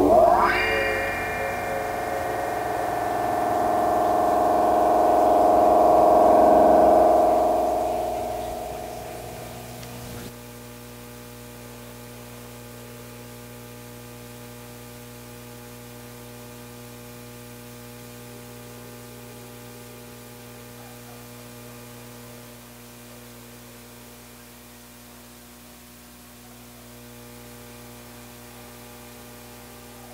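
Electronic music through effects: a pitch sweeps sharply upward, then a droning tone swells and fades out about ten seconds in. Left behind is a steady electrical hum from the equipment.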